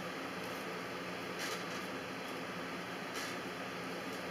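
Knife scraping and slicing the skin off a slimy prickly pear cactus pad on a plastic cutting board: two soft, short scrapes, about a second and a half in and again near three seconds, over a steady hiss.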